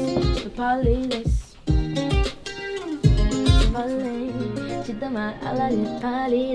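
Music: guitar and a kick-drum beat, with a voice singing a wavering melody over it. The drums stop a little past halfway.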